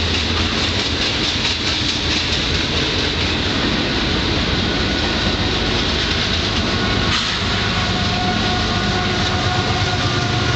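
Freight train rolling past: a steady rumble of wheels on rail with clickety-clack over the rail joints. About seven seconds in, a steady whine joins as a diesel locomotive in the middle of the train goes by.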